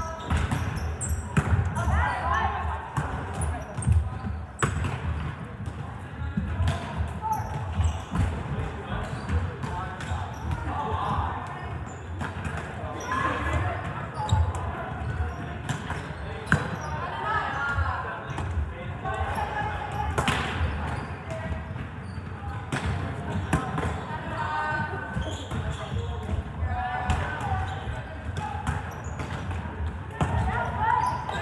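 Volleyballs being passed and hit, with irregular sharp slaps of balls on forearms and hands and thuds of balls bouncing on a hardwood gym floor, over the constant chatter of many players' voices echoing in a large gym.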